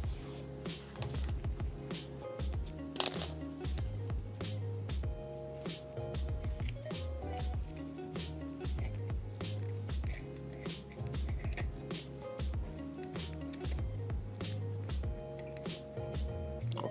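Background music over the crackle of vinyl electrical tape being pulled off the roll, cut and wrapped around a spark-igniter wire joint, with one sharper tearing noise about three seconds in.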